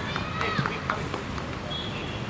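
Several people's voices talking and calling out, with a few light knocks and clicks.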